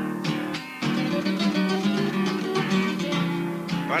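Acoustic guitars playing a Cuyo cueca, with strummed chords and picked melody lines in a steady rhythm. A man's voice starts speaking right at the end.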